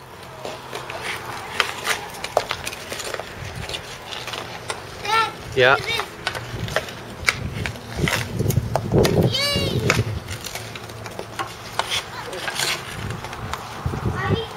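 Ice hockey sticks tapping and clacking on the ice and puck, with skate blades scraping, heard as many short, sharp clicks scattered throughout. A child's voice cuts in briefly twice.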